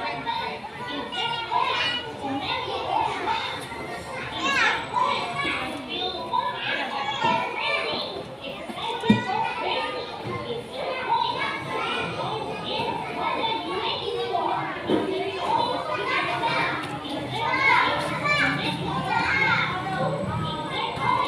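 Children playing and chattering, several young voices overlapping with adult talk, with a single sharp knock about nine seconds in.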